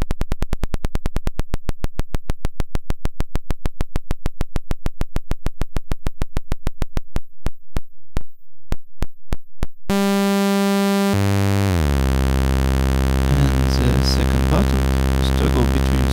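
Analog Eurorack VCO (kNoB Technology η Carinae) in LFO mode, its sawtooth heard as a train of clicks that slows from about eight a second to about two as the tune knob is turned down. About ten seconds in it jumps to a steady buzzy audio-rate tone, which drops in pitch and holds a low, harmonic-rich drone.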